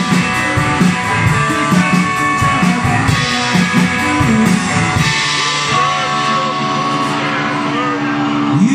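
Live rock instrumental from an electric guitar through amplifiers and a Ludwig drum kit playing a driving riff. The drums drop out about five seconds in, leaving sustained, bending electric guitar notes.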